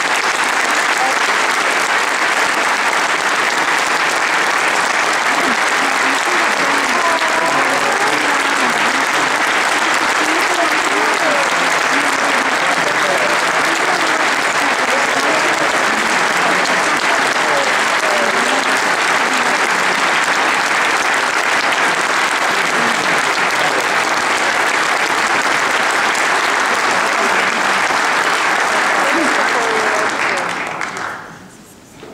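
Long, steady applause from a large standing crowd, with voices mixed in among the clapping.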